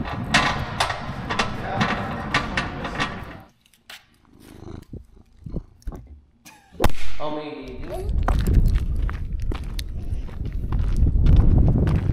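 A hand pallet jack rattling and clattering as it is pulled across a concrete shop floor, stopping after about three seconds. After a quiet spell there is a sudden knock, then a low rumbling rub as a cat brushes right against the microphone.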